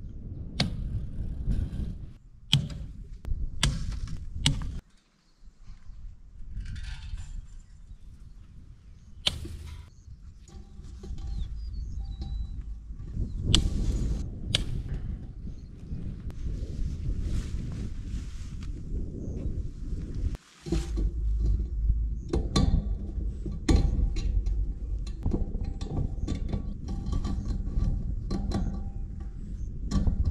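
Fence pliers and wire being worked on a barbed-wire fence: sharp metallic clicks and snaps at irregular intervals, over a low rumble of wind on the microphone.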